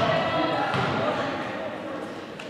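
Girls' voices calling out in a large echoing sports hall, with a volleyball bouncing on the floor. The sound fades over the two seconds.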